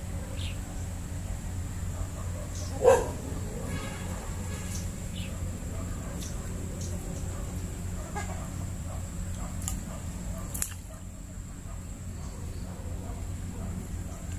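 A single short, loud animal call, about three seconds in, over a steady low hum, with a few faint clicks later on.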